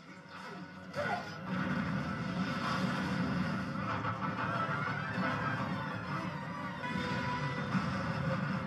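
Film soundtrack playing: dramatic score mixed with action sound effects, coming in with a sudden loud hit about a second in and staying dense throughout.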